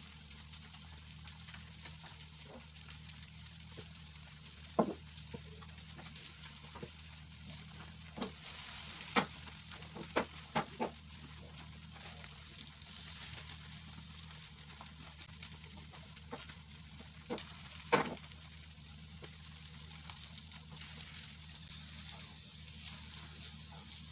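Food frying in a non-stick frying pan: a steady, faint sizzle, with occasional sharp knocks and scrapes of a spatula against the pan.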